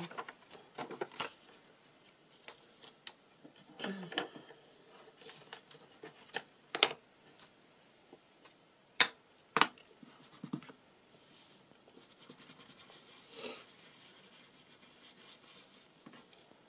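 Paper pages and a thin plastic stencil rustled and laid down on a cutting mat, with several sharp taps and clicks. From about twelve seconds in comes a quick, continuous scratchy scrubbing: an ink blending brush worked over the stencil onto the paper.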